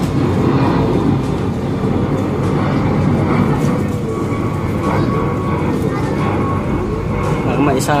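Domestic pigeons cooing, several low rising-and-falling coos, over a steady loud rumbling noise.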